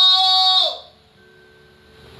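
A woman's voice holding one long, loud "whoa" into a microphone, which drops away less than a second in, leaving only low room sound.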